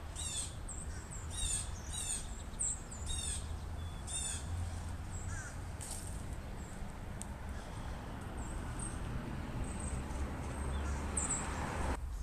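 Birds calling: a quick series of short, harsh, repeated calls in the first few seconds, then only a few scattered calls, over a faint steady low rumble.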